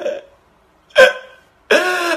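A man crying: a single short, loud sob about a second in, then a drawn-out wailing cry that begins near the end.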